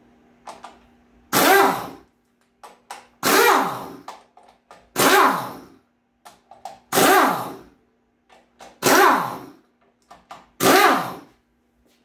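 Pneumatic air ratchet run in six short bursts about two seconds apart, each starting abruptly and falling in pitch, as it spins out the bolts holding the valve body and electro-hydraulic control module of a 6-speed automatic transmission.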